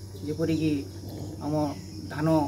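A man speaking in short phrases over a steady, high-pitched chirring of insects, with a low steady hum underneath.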